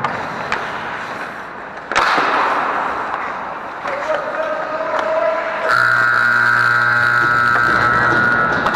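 Ice hockey play in front of the net: skates scraping the ice and sticks and puck clattering, with a sharp loud hit about two seconds in. Near the end a steady buzzing horn, the rink's game horn, sounds for the last two seconds or so.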